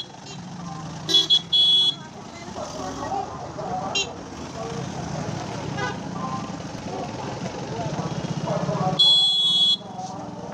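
Busy road traffic: vehicle horns honking, two short high-pitched honks about a second in and a louder, longer one near the end, over the steady running of idling and passing engines.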